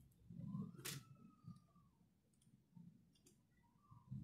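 Near silence with a single sharp click about a second in, from hand work on thin electrical wiring.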